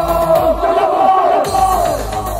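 Loud live club gig: a vocalist and crowd shouting a chant together into the microphone over electronic backing music with a thudding bass beat.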